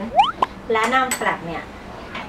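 A metal teaspoon scrapes briefly, then clinks once sharply against a bowl about half a second in, as ground flaxseed is added to baby food.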